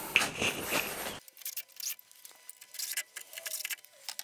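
Light, scattered metallic clicks and rattles from handling a cordless drill and the aluminium frame's fittings.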